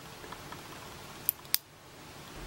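Two short, sharp plastic clicks about a quarter second apart, late on, from a slim plastic Uni Style Fit gel pen being handled, over faint room hiss.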